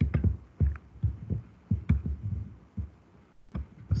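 Computer keyboard and mouse clicking picked up by the laptop microphone: a string of short, irregular, dull thumps with a few sharper clicks.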